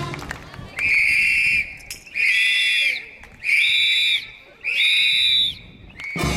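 A whistle blown in four long, even blasts, each just under a second, about one every 1.3 seconds, while the dance music stops.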